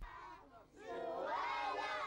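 A group of children shouting together in play, several high voices overlapping; it swells up about a second in after a quieter start.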